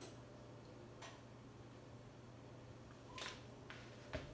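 Near silence: a steady low room hum with a few faint, short clicks, the clearest a little after three seconds in.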